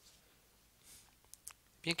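Quiet room with a soft hiss about a second in, then two short, sharp clicks close together, just before a man starts to speak.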